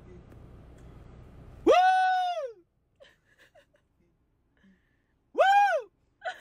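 Car cabin rumble that cuts off abruptly, then two loud, high-pitched vocal shrieks: the first about two seconds in, rising and held for under a second, the second shorter and near the end.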